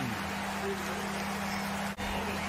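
Steady ambient noise of a college football game broadcast, an even hiss with a low steady hum under it. It drops out for a moment near the end, at a cut between highlight clips.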